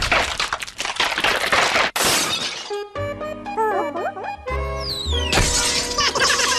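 Cartoon soundtrack: crashing, shattering sound effects over music for the first two seconds or so, then a short tune with sliding notes, and a falling whistle near the end.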